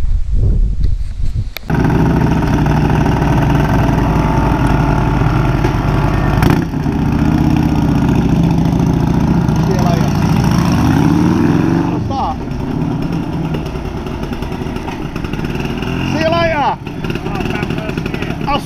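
Classic motorcycle engines running as bikes pull away one after another, among them small BSA Bantam two-strokes, with one engine running steadily close by for the first several seconds before the sound drops back.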